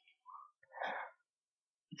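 A man's short breath between spoken phrases: a faint, noisy puff lasting about a third of a second, just under a second in, after a fainter mouth click.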